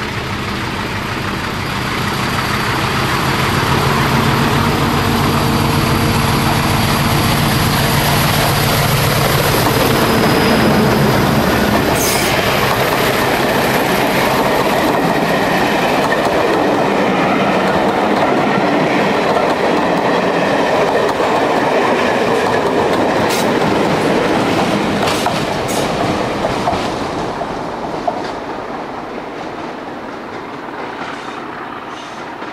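Diesel-hauled passenger train passing close by. The locomotive's engine note is heard first, as a steady hum, during the first ten seconds or so. Then comes the running noise of the coaches' wheels on the rails, with sharp clicks over the rail joints, fading near the end as the train moves away.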